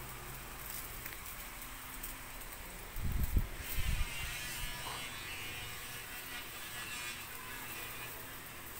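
Steady low electric hum of room tone, broken by two short, loud, low rumbles about three and four seconds in.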